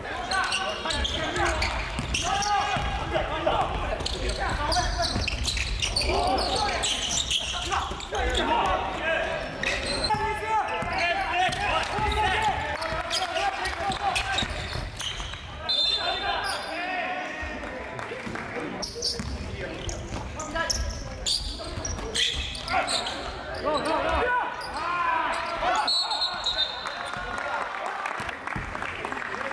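Basketball game sound in a gymnasium: the ball bouncing on the hardwood floor, with players' voices calling out and echoing in the large hall.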